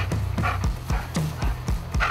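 Background music with a steady thumping beat over a low bass line.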